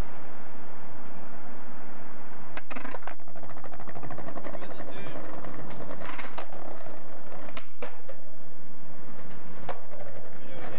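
Skateboard rolling on a concrete sidewalk, its wheels rattling over the rough surface, with sharp clacks of the board striking the ground about five times.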